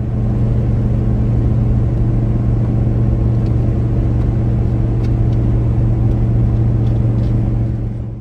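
Steady drone of a full-size passenger van cruising at highway speed while towing a trailer, heard from inside the cabin: a low engine hum under road and tyre noise.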